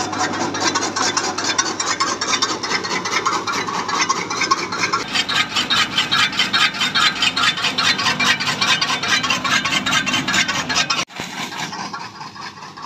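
Dhiraj electric chaff cutter chopping dry maize stalks: its bladed flywheel makes a rapid, even run of cutting strokes as stalks are fed in. The sound drops suddenly near the end and carries on quieter.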